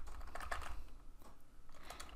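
A few light taps on computer keyboard keys, mostly in the first second, as numbers are typed into a settings field.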